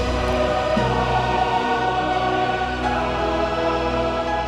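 Background music: a choir singing long held chords that shift a couple of times.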